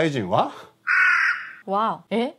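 A single crow caw about half a second long, a little past half a second in, dropped in as a comic sound effect on a reaction shot.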